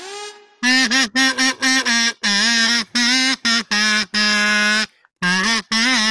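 Duck call blown by mouth in a string of about a dozen buzzy quacking notes at nearly the same pitch. Most are short, with two longer held calls, and there is a brief pause near the end.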